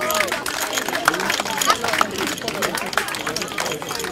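A small crowd clapping in an irregular patter, with voices talking over it.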